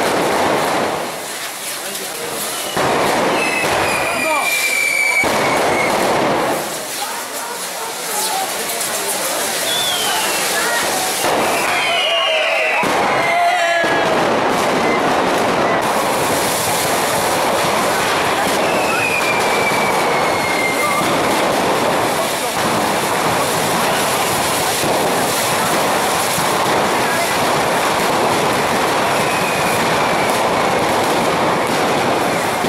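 Festival rockets fired in large numbers along a street, a continuous rushing hiss and crackle with several whistles gliding down in pitch, over the voices of a crowd.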